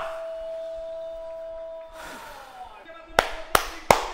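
A man clapping his hands in a quick, even rhythm, about three claps a second, starting about three seconds in.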